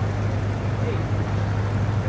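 City street traffic noise: a steady rumble with a constant low hum running throughout, and faint indistinct voices.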